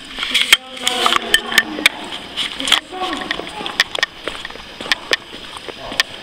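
Footsteps of several people walking on the rough floor of a disused railway tunnel, heard as sharp, irregular clicks, with indistinct talking at times.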